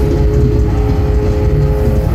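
Live metal band playing an instrumental passage with no vocals: distorted guitars, bass and drums under one note held steady, which changes right at the end.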